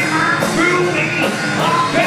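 A hard rock band playing a song: electric guitars, bass guitar and a drum kit with cymbals, with a male singer's voice over them.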